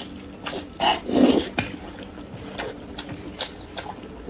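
Close-miked wet slurping and chewing of a mouthful of saucy noodles, with the loudest slurp a little over a second in, followed by softer smacks and clicks of the mouth, over a faint steady hum.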